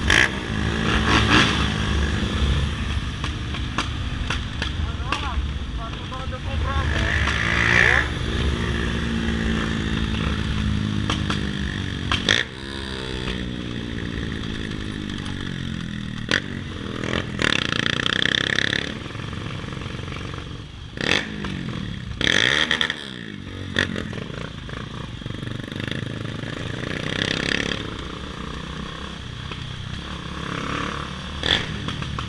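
Motorcycle engine running as the bike is ridden through traffic, revving up and easing off, with the engine note dropping steeply about twelve seconds in as it slows.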